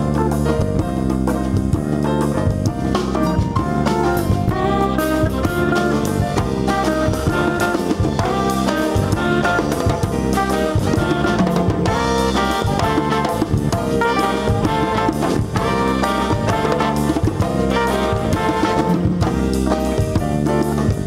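Live jazz band playing: saxophones and trumpet with piano over a drum kit, in a steady groove.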